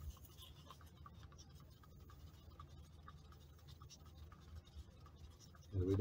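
Faint scratching of a stir stick against the inside of a paper cup as resin is mixed, blending in a few drops of blue tint.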